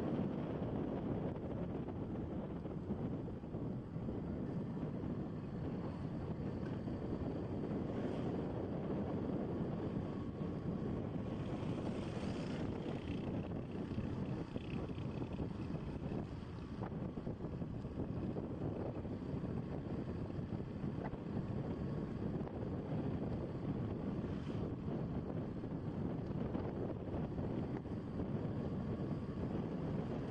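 Wind buffeting the microphone on a moving Honda scooter, over the steady low running of its engine and tyres on the road.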